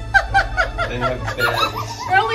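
A person laughing in a quick run of short chuckles.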